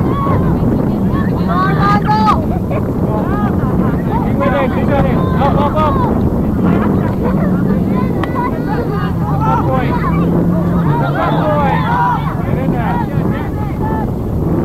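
Steady motor-and-propeller hum of a camera drone, its pitch dipping slightly about eleven seconds in. Over it come frequent distant shouts and calls from players and spectators.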